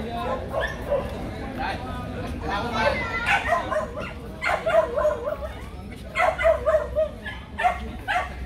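A dog barking in several quick runs of short calls, about three seconds in, again around five seconds and near the end, over background voices.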